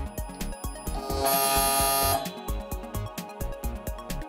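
Background music with a steady beat; about a second in, a loud buzzing tone lasts about a second, which fits a brushless hub motor buzzing as a VESC speed controller runs its motor-detection measurement.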